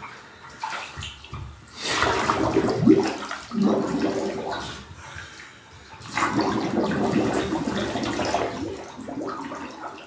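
Bathwater sloshing and splashing in a full tub as a clothed body moves in it, with the knees drawn up. There are two bouts of a few seconds each, starting about two seconds in and again about six seconds in, with smaller splashes before them.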